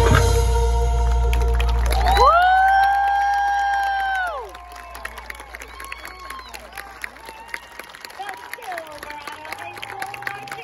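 A marching band's closing chord cuts off right at the start, and a low drone lingers for about two seconds. Then one spectator gives a long "woo", followed by scattered cheering, whoops and clapping from the stands.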